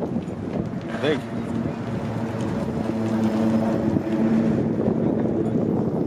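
Background voices talking, with a steady low engine hum that starts about a second and a half in and runs until near the end.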